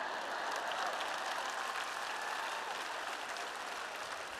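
Audience applauding steadily after a joke from the stage.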